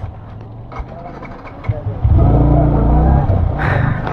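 Low engine rumble heard from the seat of a motorcycle riding through slow traffic, jumping much louder about two seconds in and holding a steady note.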